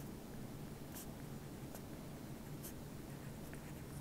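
Faint, scattered taps and scratches of a stylus tip on a tablet's glass screen as words are handwritten, over a low steady hum.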